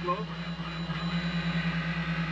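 Soyuz ASU space toilet's suction fan running after being switched on, a steady hum with an airy hiss as it draws air through the urine funnel and hose.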